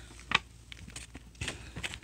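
A few light taps and clicks, the loudest about a third of a second in, then several smaller ones in the second half.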